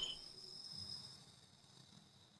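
Near silence with a faint, steady high-pitched tone that fades away in the first second and a half.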